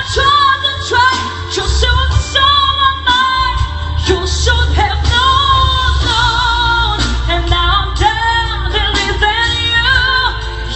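A woman singing a pop song over instrumental accompaniment with a strong bass line, holding long notes with vibrato.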